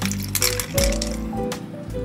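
Background music with a steady beat, over a few light clinks of ice cubes and metal tongs in a stainless-steel bowl of ice water.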